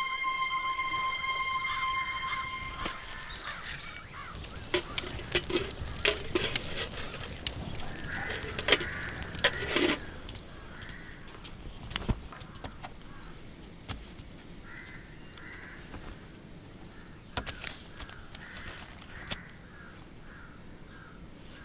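A held musical note fades out in the first few seconds. Then come irregular sharp wooden clicks and knocks from a hand-turned wooden charkha (spinning wheel), with short bird calls recurring faintly behind them.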